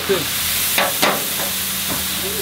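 Chopped meat frying on a steaming flat-top griddle, a steady sizzle, with a couple of sharp clicks of a metal spatula against the plate about a second in.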